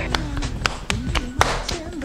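Two people playing a hand-clapping game, palms slapping together in a quick, uneven run of sharp claps, over background music.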